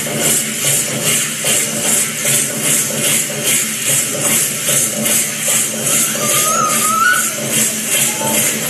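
Danza dance music: a steady beat of about two pulses a second, with rattles or jingles shaken on every beat. A brief high note sounds about six seconds in.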